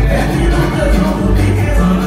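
Live concert music played loud through a stage PA, with a steady heavy bass beat and a woman singing.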